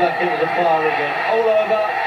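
A boxing TV commentator talking over the steady noise of an arena crowd, from a fight broadcast.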